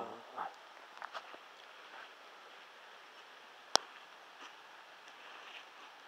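Steady light hiss of rain falling, with one sharp click about two-thirds of the way through.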